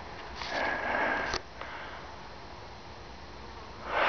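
A person sniffing through the nose close to the microphone, one sniff about a second long that cuts off sharply, over a faint steady outdoor hiss.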